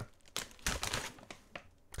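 A crisp packet of Lay's Oven Baked crisps crinkling in a hand as it is picked up and raised, in a few irregular rustles.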